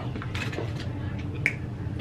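A few short, sharp clicks of eating: mouth clicks and the handling of food, over a steady low background hum.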